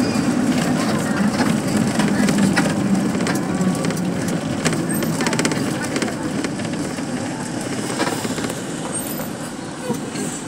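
Engine and road noise heard from inside a moving vehicle: a steady low drone with scattered rattles and clicks, easing off slightly toward the end.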